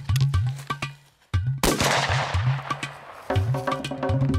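A single shotgun shot about one and a half seconds in, fading away over about a second; the shot missed the jackrabbit. Background music with a steady drum beat plays before and after it.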